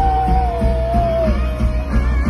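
Live country band playing loud through a festival PA, heavy in the bass, with a voice holding one long sung note that slides down and ends about a second and a half in.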